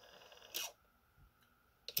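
Nakamichi BX-100 cassette deck's tape transport running faintly in fast forward, then a mechanical clunk about half a second in as it stops by itself and goes quiet. This is the auto-stop tripping, which the owner suspects comes from a faulty optical reel-rotation sensor. A sharp click follows near the end.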